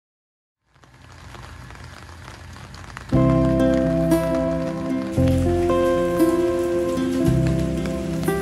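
Steady rain noise fading in, joined about three seconds in by background music: sustained chords over a bass line, changing about every two seconds.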